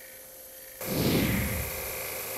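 Quiet room tone, then about a second in a sudden rush of noise that sweeps downward and settles into the steady running of a scroll saw cutting wood.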